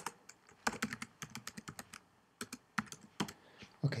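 Typing on a computer keyboard: runs of quick keystrokes with a brief pause about two seconds in, then another run.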